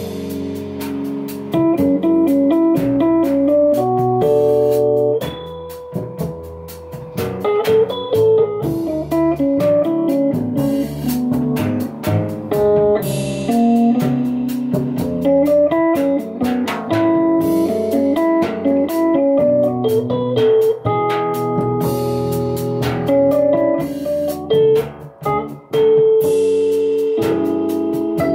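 Instrumental jazz trio: a Rhodes electric piano plays a moving melodic line over plucked double bass, with a drum kit keeping time on cymbals and drums.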